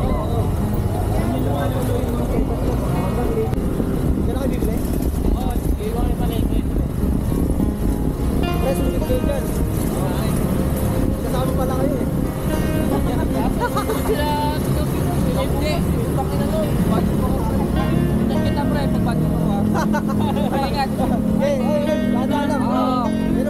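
Motor scooter riding along, its engine hum mixed with steady wind rush on the microphone, with indistinct voices and music mixed in.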